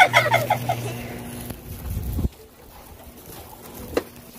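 Phone handling noise: jacket fabric rubbing against the microphone, stopping abruptly a little over two seconds in, after a brief burst of rapid vocal sound at the start. A single sharp click near the end, as a house door is opened.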